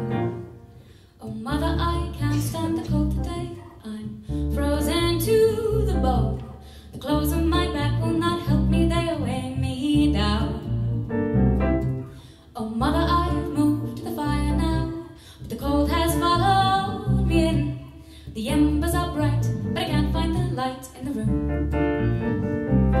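Live band music: strummed acoustic guitar and stage keyboard with voices singing, over a steady low bass pulse. The music dips at the very start and comes back in about a second and a half in.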